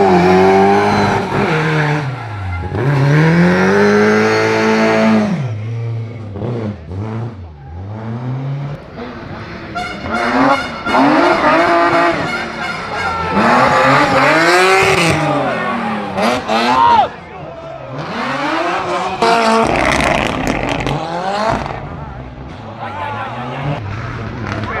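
Rally car engines revving hard, their pitch climbing and falling again and again with each gear change and lift as the cars pass on the stage. The sound eases off in the middle and cuts off suddenly near the end of the second car's run.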